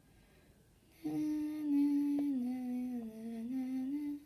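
A person humming one long held note, starting about a second in; the pitch steps down partway through and rises slightly near the end.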